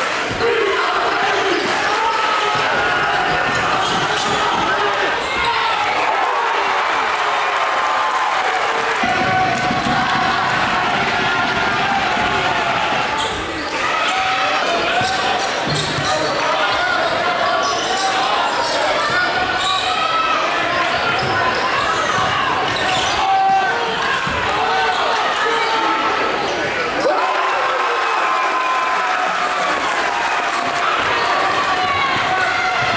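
Basketball dribbling on a hardwood gym floor, with the indistinct voices of a crowd of spectators throughout.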